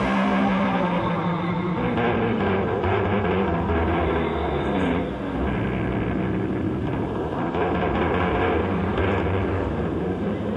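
Instrumental passage of a psychedelic blues-rock track, a dense steady mix of guitar, bass and drums with no vocals.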